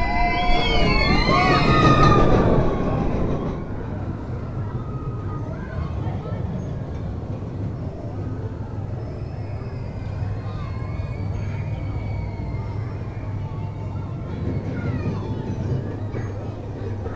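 Roller coaster train rumbling past on its track with riders screaming and shouting for the first few seconds. Then a steadier, quieter rumble as the train runs on farther away, with faint screams.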